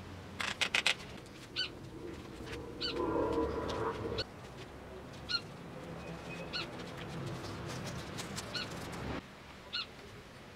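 A bird chirping in short, repeated calls about once a second, heard over handling noise: a quick run of sharp clicks near the start and a rustle a few seconds in as the bonsai pot is worked on.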